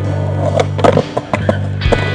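Skateboard hitting and grinding along the edge of a concrete curb: a few sharp clacks of the board and trucks, loudest about a second in, with rolling and scraping between them. Rock music plays underneath.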